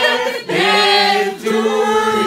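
A small group of people singing together without accompaniment, with male and female voices holding long notes.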